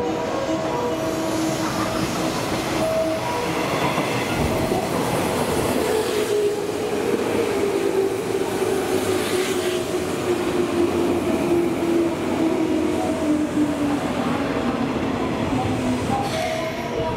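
JR West 201 series electric commuter train arriving and slowing alongside the platform, its wheels and motors running. From about six seconds in, a whine falls slowly in pitch as the train brakes.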